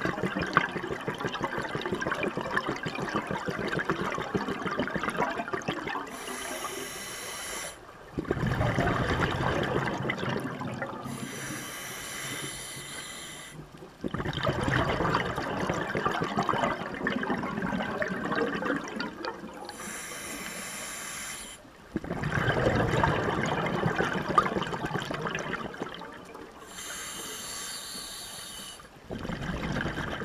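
Scuba diver breathing through a regulator underwater, in slow cycles of about seven seconds: a short hissing inhale, then a longer rush of bubbling exhaled air. Four such breaths are heard.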